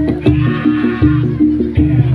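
Loud Javanese gamelan accompaniment for a horse-trance dance: a steady beat of drum and gong-chime strikes over sustained low metallic tones, with a high wavering melody line above.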